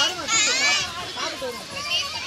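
Children's and adults' voices chattering, with a loud high-pitched squeal that bends down and up about half a second in.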